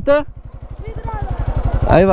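Single-cylinder engine of a TVS Apache motorcycle running at low speed, an even rapid low pulse throughout, with voices at the start, faintly in the middle and more loudly near the end.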